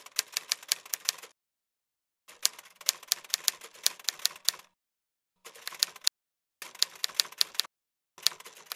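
Typewriter sound effect: keys clacking in quick runs of keystrokes, four bursts broken by short silent pauses.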